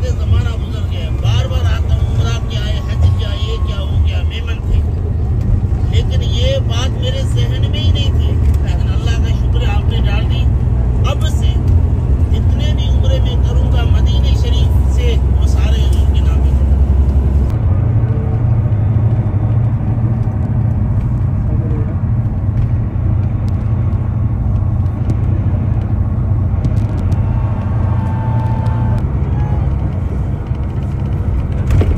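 Steady low rumble of a coach bus running, engine and road noise heard from inside the cabin, with a man's voice talking over it for about the first half.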